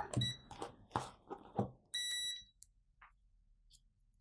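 A digital multimeter beeps: a short beep at the start and a half-second beep about two seconds in, with a few sharp clicks of the meter and probes being handled between them.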